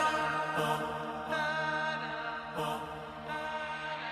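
Vocal chant theme music, held sung notes that step from pitch to pitch, getting slowly quieter as it fades out.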